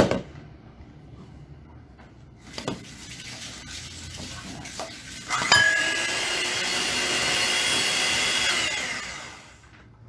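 Electric hand mixer beating butter and powdered sugar in a bowl. It comes on loud with a sharp click about five and a half seconds in, runs with a steady whine for about three and a half seconds, then winds down.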